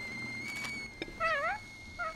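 A faint click, then a short, high-pitched, wavering cooing call from a cartoon character's voice about a second and a quarter in.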